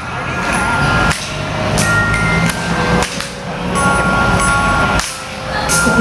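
Live band playing a pop-rock song's instrumental intro on electric guitar, bass guitar, keyboard and drums through a PA, the chords changing about once a second.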